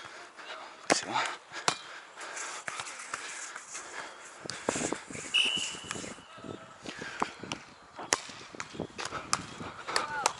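Open-air sand volleyball courts: background voices of players, with scattered sharp slaps of volleyballs being hit, and a brief high tone about five seconds in.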